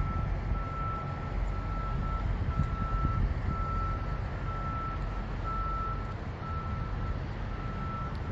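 A vehicle's reversing alarm beeping steadily, about one beep a second, over a low rumble.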